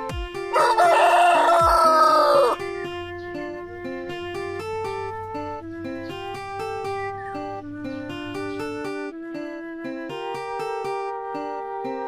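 A rooster crows once: a single loud crow of about two seconds, starting about half a second in and falling in pitch at the end. Plucked-string background music plays underneath and on after it.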